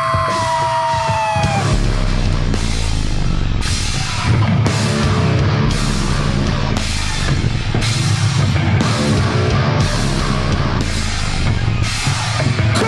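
Live rock band playing loud and heavy: a long falling note for the first second and a half, then the full band comes in with heavy bass, electric guitar and drums, a hard hit landing about every 0.7 s.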